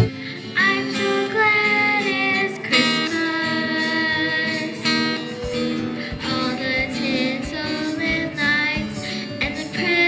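A young girl singing a song into a microphone, her sung melody over a light instrumental accompaniment with plucked strings.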